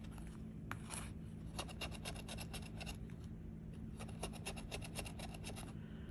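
A scratcher tool scraping the coating off a scratch-off lottery ticket in quick, faint, repeated strokes with short pauses, uncovering the ticket's bonus spots.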